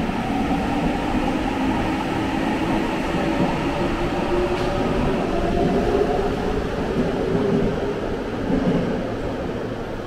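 Subway train pulling out of an underground station behind platform screen doors: a steady rumble with a motor whine that rises slowly in pitch as it gathers speed, easing off near the end.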